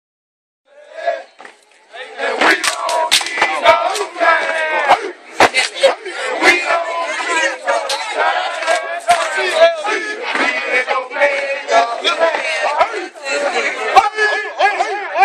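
A group of fraternity men shouting and chanting together in a step-show chant, punctuated by sharp percussive hits. It starts faintly and swells to full volume about two seconds in.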